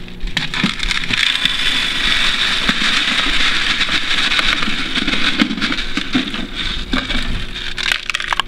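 Josh's Frogs False Bottom drainage pellets poured from a plastic cup into a glass terrarium: a steady hiss of granules streaming and landing, with scattered clicks. It lasts about seven seconds and tails off as the cup empties near the end.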